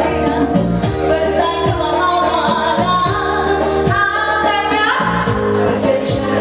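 A woman sings a pop song into a microphone over amplified band accompaniment, with drums keeping a steady beat and a held note rising near the end.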